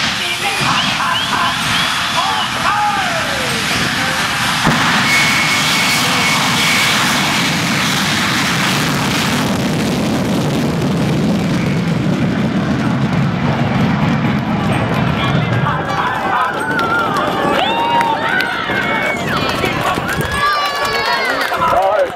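Jet-powered school bus's F-4 Phantom jet engine, a General Electric J79 turbojet, run up to full power for a drag run. It makes a loud, heavy roar with a deep rumble that builds about four to five seconds in and dies away after about sixteen seconds, with voices heard before and after it.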